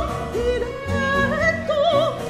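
Soprano singing a Baroque cantata aria, holding notes with a wide vibrato over a chamber orchestra accompaniment.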